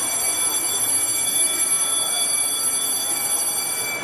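A sound effect in the dance routine's edited soundtrack: a steady hiss with several high ringing tones held throughout, cutting off abruptly into the next part of the mix.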